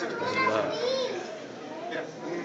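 Children's voices in the background, with a high-pitched voice calling out about half a second in, over general chatter of a crowd in a public hall.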